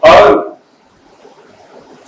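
A man says one short, loud word, then pauses for about a second and a half, leaving only faint room tone.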